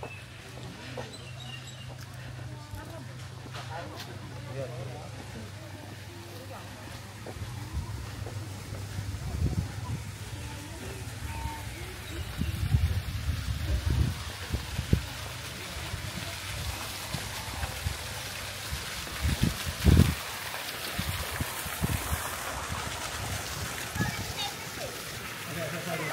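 Outdoor crowd ambience of background voices and splashing water, with a steady low hum. From about nine seconds in, a run of low thumps on the microphone; the loudest comes near the end.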